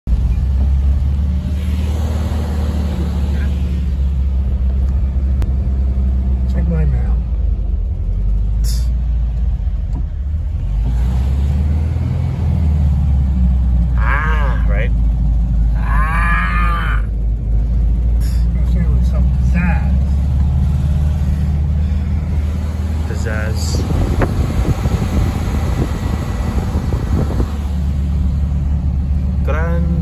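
Steady low rumble of a bus's engine and road noise heard inside the cabin as the bus drives.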